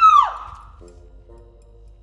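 A loud, long, high vocal cry with a rising and falling pitch dies away in the first moment. Soft background music with a few steady notes follows.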